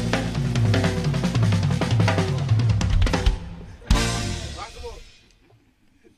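Up-tempo rock-and-roll song with a full drum kit and bass, closing on one last accented hit about four seconds in that rings out and fades away.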